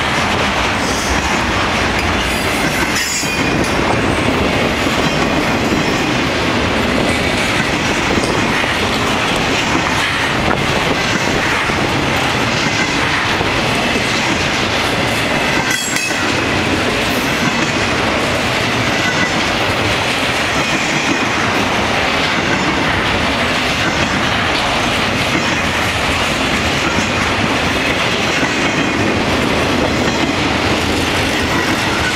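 CSX intermodal train's flatcars, loaded with highway trailers, rolling past at speed: a steady, loud rumble and clatter of wheels on rail, with a faint high wheel squeal at times.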